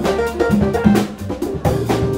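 Live jazz-fusion band playing: a drum kit with frequent hits, electric bass and keyboards.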